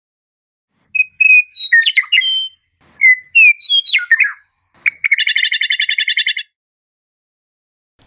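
Songbird singing: two short phrases of clear, sliding whistled notes, then a fast, even trill lasting just over a second.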